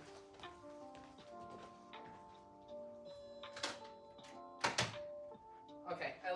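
Faint background music with held notes, broken about three and a half seconds in and again a second later by two sharp thunks as the shop's door is shut and locked.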